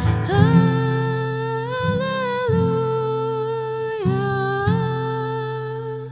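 A woman singing long held notes over acoustic guitar accompaniment. The voice rises slightly about two seconds in and dips about four seconds in, while the guitar chords change underneath.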